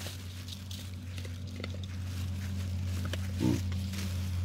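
A hamadryas baboon gives a single short, low grunt about three and a half seconds in, over a steady low hum.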